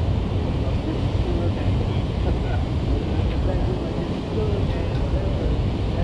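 Wind rumbling on the microphone over a steady outdoor noise, with faint voices in the background.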